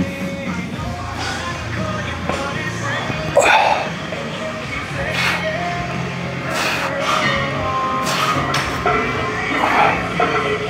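Rock music with singing plays steadily throughout. A short hiss-like noise recurs about every second and a half from a few seconds in.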